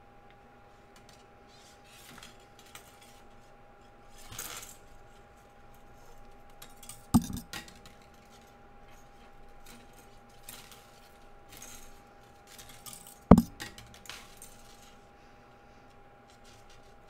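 Sterling silver wire being coiled by hand around square wires: faint scrapes and light metallic clinks, with two sharper knocks, one about seven seconds in and another about thirteen seconds in.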